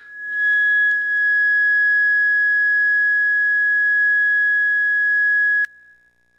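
A single steady, high-pitched squeal that swells up within the first half second, holds one pitch, then cuts off abruptly with a click near the end. It is typical of microphone feedback ringing through a sound system.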